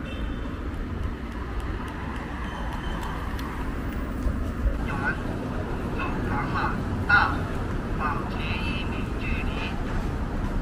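City street ambience: a steady low rumble of road traffic, with people talking nearby from about halfway through.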